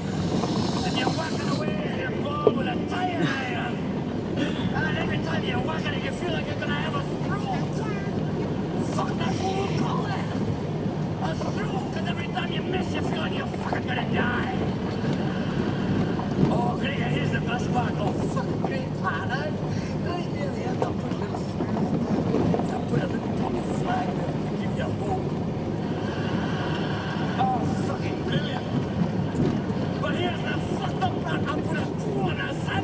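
Voices from a stand-up comedy recording, over a steady car rumble while driving.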